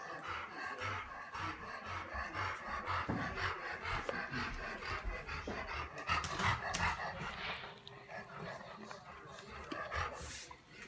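A dog panting rapidly and rhythmically, easing off near the end.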